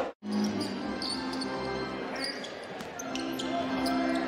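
Basketball game sounds on the court: ball bounces and short squeaks over steady arena background noise, after a brief gap in the sound near the start where the highlight cuts.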